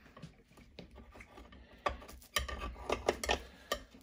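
A utensil clicking and scraping against the plates of a Redmond waffle iron as waffles are pried loose. The clicks are light and scattered at first, then come sharper and faster in the second half.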